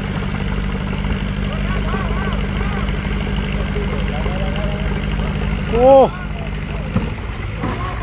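John Deere 5050D tractor's three-cylinder diesel engine running steadily under load while the tractor is stuck in deep mud, its rear wheels dug in and churning; the engine note eases off about seven seconds in. A man shouts "oh" about six seconds in.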